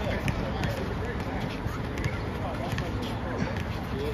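Outdoor basketball court ambience: a steady background hiss with faint voices and a few light knocks from the ball being handled and bounced.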